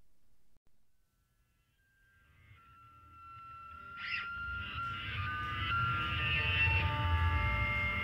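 About two and a half seconds of near silence between album tracks, then several sustained, overlapping electric guitar feedback tones fade in over a low rumble and grow steadily louder as the next rock track opens.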